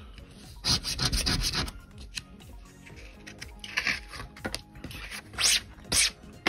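Cardboard scratch-off lottery tickets being handled: cards rubbing and sliding against each other and the table surface in several short scraping bursts, the longest about a second in.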